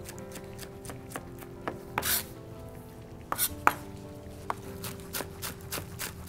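Chef's knife slicing green onions thin on a plastic cutting board: the blade taps on the board irregularly at first, then more quickly, about four taps a second, in the second half, with one louder knock partway through.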